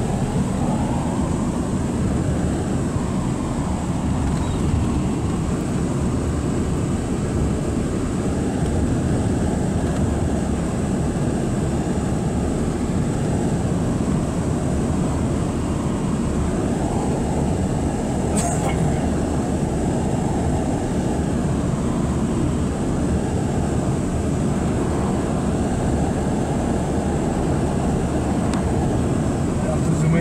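Steady road and engine noise heard inside a moving car, with tyres on a wet road. There is a single brief click about eighteen seconds in.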